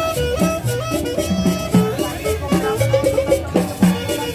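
Live street band playing an upbeat Latin dance tune: a quick melody line over an upright bass.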